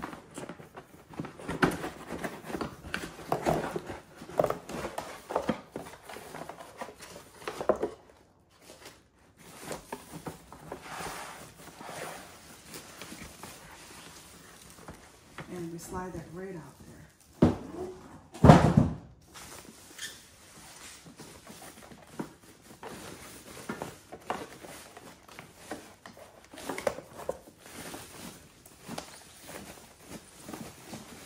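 Cardboard packaging and a plastic bag being handled while a coffee maker is unpacked: irregular rustling, scraping and knocks, with one loud thud about halfway through.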